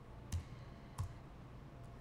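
Two faint clicks of computer keyboard keys about two-thirds of a second apart, with a fainter tick near the end.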